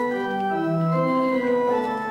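Organ playing slow, held chords, the notes changing one after another.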